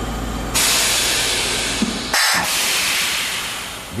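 A low machinery rumble, then about half a second in a loud hiss of high-pressure steam escaping sets in, with a brief harsher spurt near the middle, easing off toward the end.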